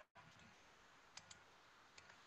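Near silence with faint room hiss, broken by two quick computer mouse clicks a little over a second in.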